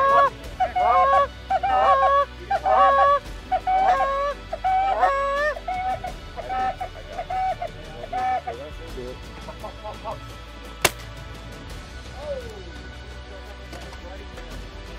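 Canada goose honks in a quick series, about two a second, trailing off about nine seconds in; then a single shotgun shot about eleven seconds in.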